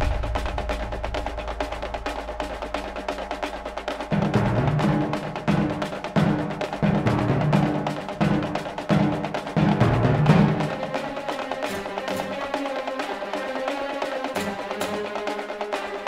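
Orchestral thriller film-score music led by percussion. A low rumble fades at first; from about four seconds in, heavy low drum hits drive a rhythm until about ten seconds. The music then thins to sustained tones under a ticking, wood-block-like percussion pattern.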